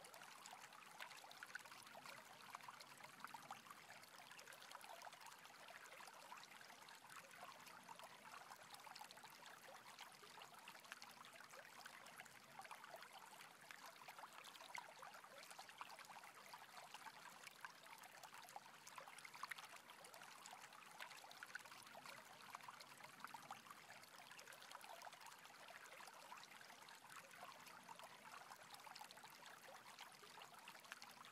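Faint, steady sound of a rushing stream.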